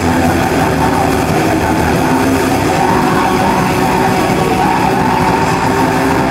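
Metal band playing live: loud, dense distorted electric guitar and full band, steady without a break.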